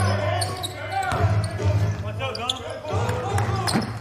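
A basketball bouncing on a hardwood court during play, with voices on the court.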